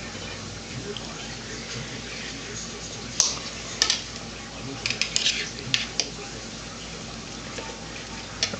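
Light, sharp clicks and taps of a spoon against a plate and tabletop, a few about three seconds in and a small cluster around five to six seconds, over a steady low hiss.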